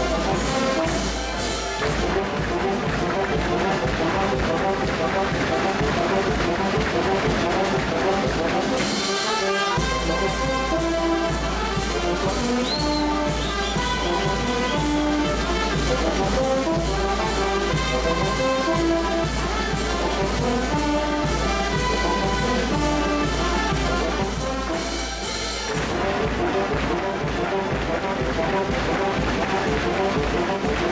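Live Oaxacan wind band (banda de música) of brass and saxophones playing a lively dance tune over a steady beat, with a change of section about ten seconds in and again near the end.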